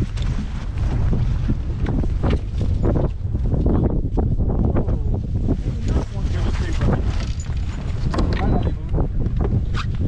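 Wind buffeting the microphone in a steady low rumble, with choppy lake water slapping against a boat hull in short, irregular knocks.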